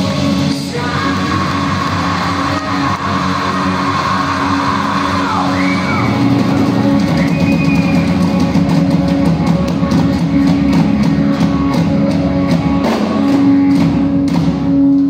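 Live rock band in an acoustic line-up, with acoustic guitars, bass and a drum kit, playing with vocals. The band grows louder about six seconds in, and the cymbals and drums get busier after about eight seconds.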